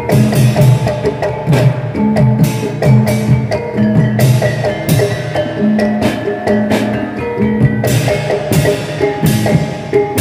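Javanese gamelan accompaniment for a kuda kepang dance: a kendang hand drum beating a fast, busy rhythm over struck, ringing pitched metal percussion.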